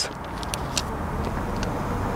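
Steady outdoor background noise, a low rumble and hiss, with a few faint short high ticks.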